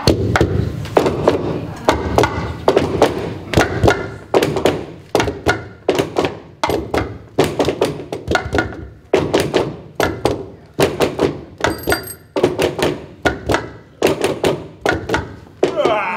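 Walking sticks and crutches knocked on a wooden floor in a steady rhythm, about two to three thuds a second.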